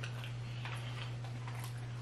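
A pause in the talk: a steady low hum with a few faint soft ticks and clicks over it.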